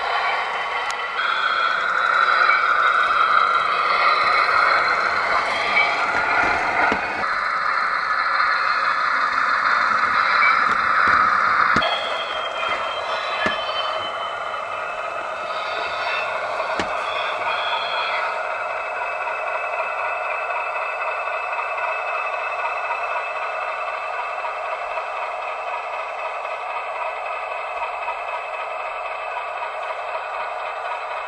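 O gauge model Class 40 diesel locomotive running, giving a steady, thin, tinny engine drone with no bass, as from a small onboard speaker. It is louder and shifts in level during the first twelve seconds, then settles steadier and quieter.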